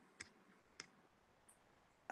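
Near silence broken by two faint computer clicks, about a quarter second and just under a second in, as the on-screen windows and slides are switched.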